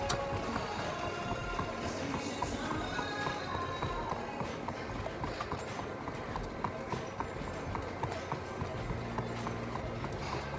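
Rhythmic footfalls of a person running, heard under loud background music playing in the gym.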